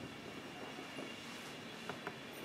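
Quiet room tone: a faint, steady hiss with a few soft ticks, the clearest near the end.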